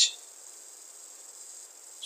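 Steady faint hiss with a thin high-pitched whine: the background noise of the recording, heard in a pause between spoken words.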